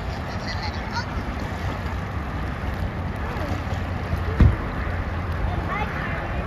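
Steady rush of a shallow, rocky river with wind buffeting the microphone, and a single loud thump about four seconds in. Faint children's voices come and go.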